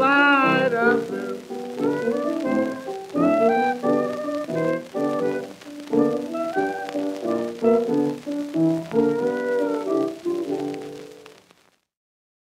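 Closing bars of an old barrelhouse piano blues record: piano playing, with a wavering held vocal note at the start. The music stops about eleven and a half seconds in.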